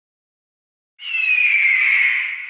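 Silence for a second, then a sudden cinematic trailer sound effect: a high ringing whistle over a hiss, sliding slowly down in pitch.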